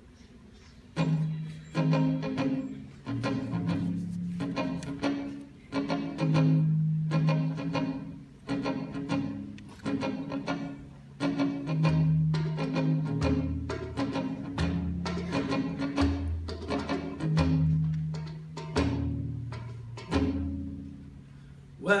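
Acoustic guitar playing an instrumental intro, coming in about a second in, with repeated plucked and strummed chords that change every second or so.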